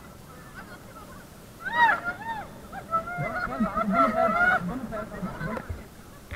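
People in the river shrieking and laughing, a run of high-pitched, rising-and-falling cries that starts about two seconds in, with a lower voice underneath.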